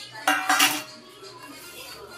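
Stainless-steel dishes clanking: a steel bowl knocks twice against a steel pan as its contents are tipped in, in the first second, followed by quieter scraping and stirring in the pan.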